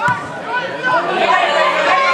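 Several overlapping voices shouting and calling at once during football play, louder from about a second in. A short sharp knock right at the start.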